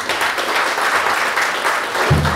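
Audience applauding: dense, steady clapping.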